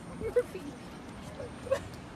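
A dog making a few faint, short vocal sounds while it holds on to a bread bun. There is a sharp click about half a second in.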